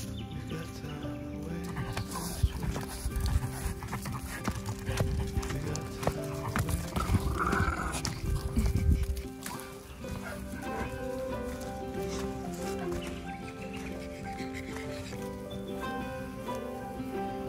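Background music with held notes throughout. From about two seconds in until about nine and a half seconds, a dog sniffs and snuffles right at the microphone, louder than the music, then stops.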